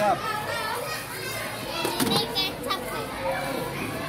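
Crowd of schoolchildren at recess, many voices chattering and calling out at once, with a few shrill shouts about halfway through. A couple of sharp clicks sound, one at the start and one about two seconds in.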